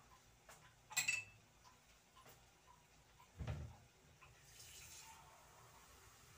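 Faint kitchen handling sounds: a sharp metallic clink about a second in, a dull thump a little past halfway, then a soft hiss like water running briefly.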